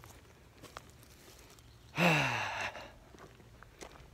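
A man's heavy, breathy sigh about two seconds in, falling in pitch over about half a second, the sound of someone worn out by the heat.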